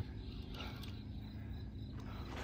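Faint, steady chirring of crickets.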